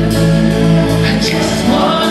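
Live gospel worship music: a band with bass guitar and drums playing behind a singer. The deep bass drops out briefly near the end.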